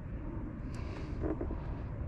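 Low, steady outdoor rumble of wind on the microphone, with a faint brief sound just past the middle.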